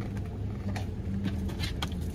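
Steady low hum inside a car cabin, with a few light clicks and rustles of items being handled.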